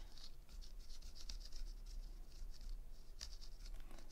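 Purple watercolour pencil scratching across embossed watercolour paper in a run of short, quick, light strokes as a butterfly's wings are coloured.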